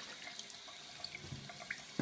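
Tap water running into the port of a blocked plate heat exchanger held in a sink, flushing black debris out of it. The water runs faintly and steadily, with a few small ticks.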